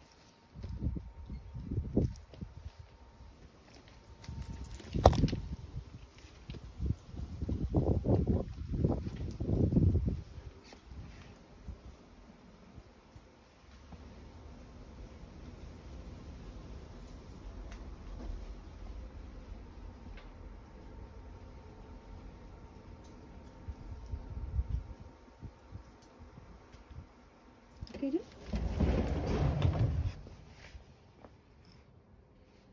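Wind gusting against the phone's microphone in irregular low buffeting bursts, with a sharp click about five seconds in, a steadier low rush in the middle, and a louder burst near the end.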